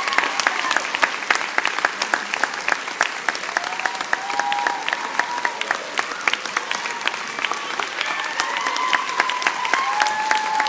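Audience applauding: a dense, steady patter of clapping, with voices calling out and a few long held cheers over it.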